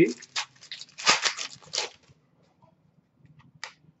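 O-Pee-Chee Platinum hockey cards being flicked and slid through by hand: a quick run of short rustling flicks for about two seconds, then quiet with a single faint click near the end.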